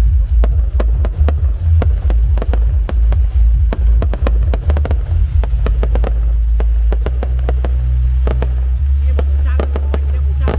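Aerial fireworks going off: a rapid run of sharp bangs and crackles, several a second, over a continuous low rumble that turns steadier in the second half.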